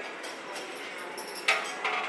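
A motorcycle rear fender being set onto the bike's frame: a sharp knock about one and a half seconds in, then a lighter knock just before the end.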